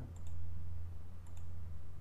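A couple of faint computer mouse clicks over a steady low hum.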